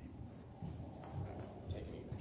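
Faint rustling and shuffling of people moving close by, over a low steady room hum.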